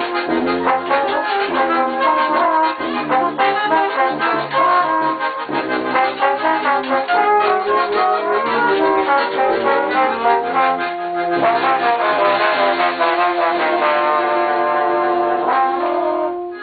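A small ensemble of trombone, saxophone and piano accordion playing a tune together in harmony, the trombone prominent. Near the end they settle on one long held chord.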